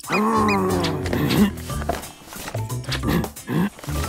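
A cartoon character's wordless vocal: a long groan that falls in pitch over the first second and a half, then shorter vocal noises, over light background music.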